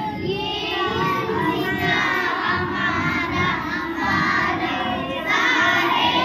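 A group of young children singing together, many voices at once, growing louder about five seconds in.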